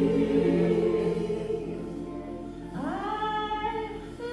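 Women's gospel choir singing a held chord that fades through the first half. Just under three seconds in, a single woman's voice slides up into a new sustained note.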